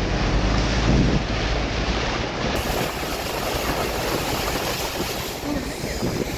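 Steady rushing noise from inside a moving car: road and wind noise with low rumble, mixed with the rush of a fast mountain river alongside.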